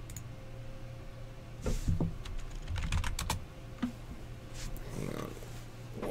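Typing on a computer keyboard: a short run of key clicks about two to three and a half seconds in, and a few more near the end, over a low steady hum.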